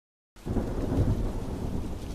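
Dead silence, then rain and a low rumble of thunder that come in suddenly about a third of a second in. The rumble peaks around a second in, under a steady hiss of rain.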